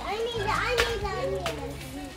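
Children's voices in indistinct chatter, over background music with a steady low bass line.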